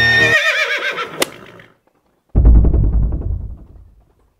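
The music cuts off as a horse whinnies, one wavering call falling in pitch over about a second and a half. About two seconds later a loud low boom sounds and fades away.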